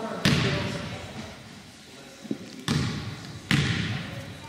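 Basketball bouncing on a gym floor, three main bounces at uneven spacing, each with a short echo from the hall.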